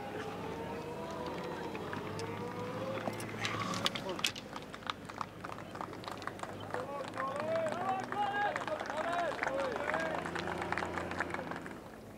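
Indistinct voices with scattered sharp clicks throughout. The level falls away near the end.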